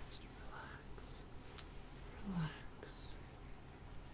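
Faint close-up whispering and soft mouth sounds, with a brief low falling hum about two and a half seconds in.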